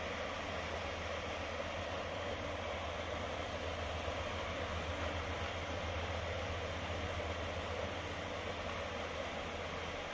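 Steady rush of a shallow, rocky river flowing over stones: an even hiss with a low rumble beneath, unbroken throughout.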